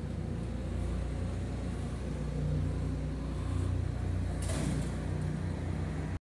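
Steady low machine hum. A short hiss comes about four and a half seconds in.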